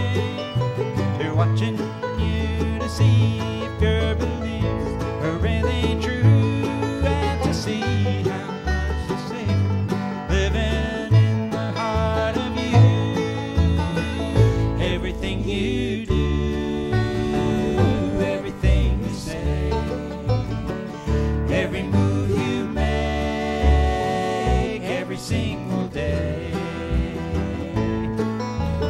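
A bluegrass band playing an instrumental break: banjo and guitar picking over a bass line that steps between low notes at an even beat.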